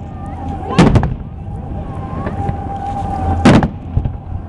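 Aerial firework shells bursting: a quick cluster of two or three bangs about a second in, and another loud bang near the end.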